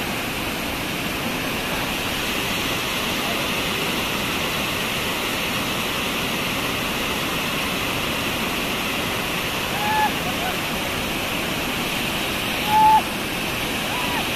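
Water rushing steadily over a dam's concrete overflow weir. Two brief shouts cut through it, one about ten seconds in and a louder one near the end.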